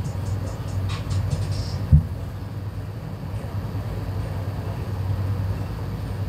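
A large tractor tire, tipped over in a flip, lands flat on the grass with a single heavy thump about two seconds in, over a steady low hum.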